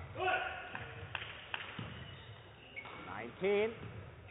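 Men's voices in a sports hall between badminton rallies: a short call early on, two sharp knocks in the middle, and a man's voice speaking near the end, typical of the umpire calling the score.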